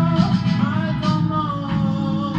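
A man singing long held notes, his voice sliding up to a new pitch about half a second in, over electric guitar and a steady low accompaniment.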